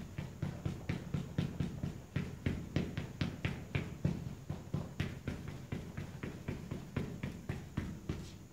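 A person making a rapid, even series of short, sharp percussive sounds, about four to five a second.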